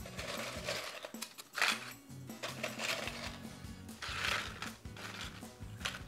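Tortilla chips rustling and clinking as a handful is taken from a bowl and set on a plate, in several short bursts, over quiet background music.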